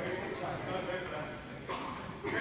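Indistinct voices carrying in a large gymnasium, with a short high squeak about a third of a second in and a single thump on the hardwood floor near the end.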